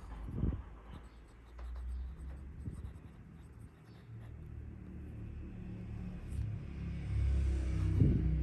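Fountain pen with a 14k gold Music nib writing on thin Tomoe River paper, the nib making a faint scratchy sound in short strokes. A low steady rumble runs underneath and grows louder near the end.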